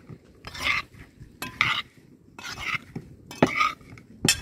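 Sliced boletus mushrooms being mixed by hand in a metal pot: short rustling scrapes and knocks of the pieces against the pot, about one a second.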